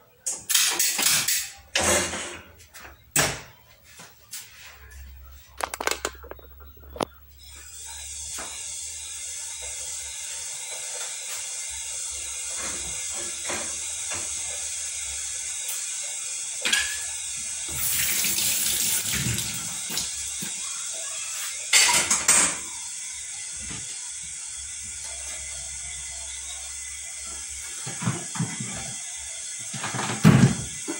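Kitchen clatter of handled utensils and dishes, then a kitchen tap left running in a steady stream from about eight seconds in, with a few knocks of things set down at the sink.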